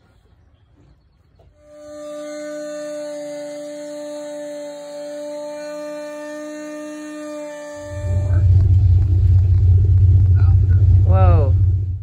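Dremel power tool running with a steady whine as it cuts into fiberglass. About eight seconds in, a much louder, deep rumble takes over with a few wavering rises in pitch, and it cuts off suddenly.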